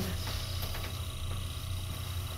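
Steady low hum of a hydraulic elevator inside its cab, with the doors closed, and a faint steady high-pitched tone over it.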